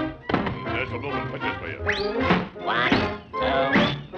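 Cartoon soundtrack music with quick upward pitch swoops, about two seconds in and again near the end, and thunking hit sound effects.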